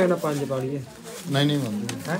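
A man's low voice in two short utterances, one at the start and one past the middle, with a pause between.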